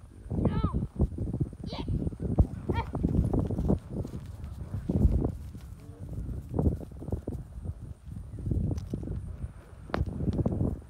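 Ponies walking, hooves clip-clopping unevenly, with three short high-pitched calls in the first few seconds.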